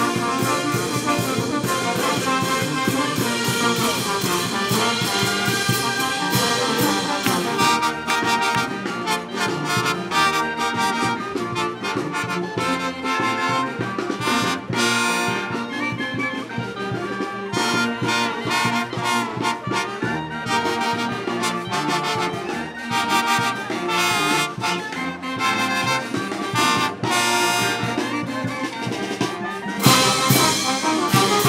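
Brass band playing: trumpets, trombones, saxophones and sousaphones over drums and cymbals, the drum and cymbal hits getting sharper about eight seconds in.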